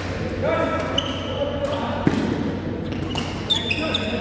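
Shuttlecock struck back and forth by badminton rackets in a doubles rally in a sports hall: four sharp hits about a second apart, the hardest about halfway through, with short high squeaks of shoes on the court floor and voices in the hall.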